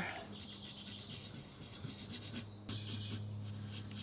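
Small curved steel planer blade honed by hand on a sharpening stone: a faint scrape of steel on stone in slow strokes, breaking off briefly about two and a half seconds in before starting again.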